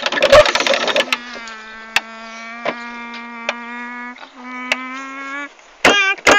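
A voice holding a buzzing hum on one steady low note close to the microphone. It breaks off briefly once and resumes a little higher. A rustling handling noise comes before it, and a few light taps fall over it.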